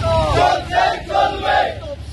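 A crowd of marching men shouting slogans together, three loud shouted phrases in quick succession.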